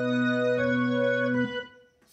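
Yamaha digital piano: a held chord with a deep bass note, an upper note changing about half a second in, then released about a second and a half in and fading out.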